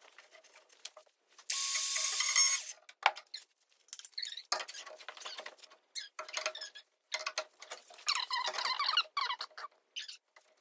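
Hand work on a vehicle's metal parts: irregular clicks, taps and light knocks. About a second and a half in there is a loud hissing rustle that lasts about a second, and near the end a run of short squeaks.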